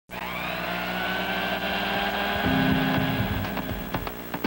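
A small motor whirring up to speed in the first half second, then running steadily at a high, even pitch. About halfway through, a lower, louder tone with repeated sharp knocks joins in.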